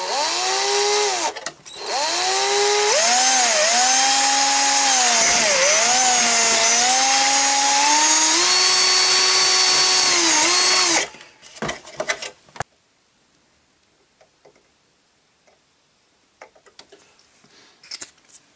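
Cordless drill/driver boring a small hole into a hard plastic post, its motor whine wavering in pitch as the bit bites. It runs briefly, stops for a moment about a second in, then drills steadily for about nine seconds and stops, followed by a few light clicks.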